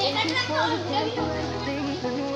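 Children's voices, talking and calling out, over background music.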